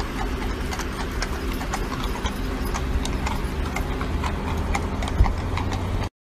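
Hooves of a pair of carriage horses clip-clopping at a walk on pavement as they pull a horse-drawn hearse, over a steady low rumble. One louder thump comes about five seconds in.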